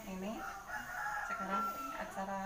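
A rooster crowing once, one long call that ends on a steady high note.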